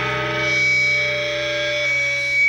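Punk band playing live: a distorted electric guitar chord held and left ringing, with the drums silent until just after it.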